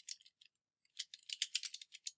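Soft keystrokes on a computer keyboard, a quick run of key clicks starting about a second in after a short pause.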